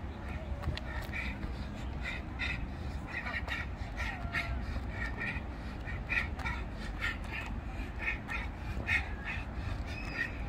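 Short bird calls repeated many times at irregular intervals, with quick light footsteps of trainers tapping and scuffing on a paved path during skipping footwork, over a steady low rumble.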